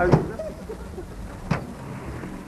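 Two sharp knocks, one right at the start and another about a second and a half later, over the faint voices of a group of people talking outdoors.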